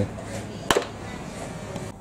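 A single sharp click about two-thirds of a second in, over a low steady background noise.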